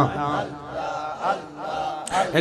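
Men's voices chanting a Sufi zikr, a repeated devotional refrain, here faint and sparse with a couple of short sung phrases.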